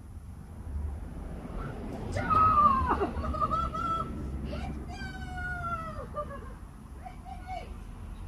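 A dog whining in high-pitched, drawn-out cries that fall in pitch, three times. The first, about two seconds in, is the loudest.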